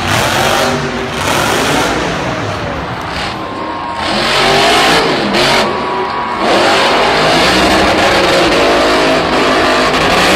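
Monster truck engines revving hard, their pitch rising and falling, over a dense arena din. The sound changes abruptly about four seconds in and again at six and a half, as one clip cuts to the next, and is louder after.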